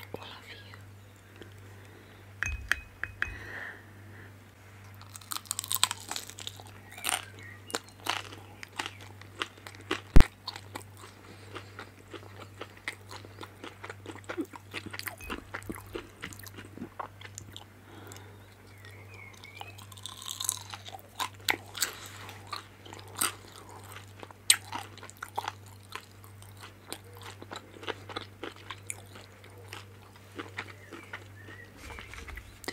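Close-miked biting and chewing of crunchy pan-fried vegetable dumplings: crisp crackling bites and wet chewing, with one sharp click about ten seconds in. A steady low hum runs underneath.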